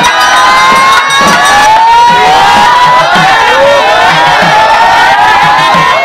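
A large crowd of devotees shouting and cheering, many voices overlapping in rising and falling cries, as holy water is poured over a Hindu temple's rooftop kalasam at the climax of a kumbabishekam consecration.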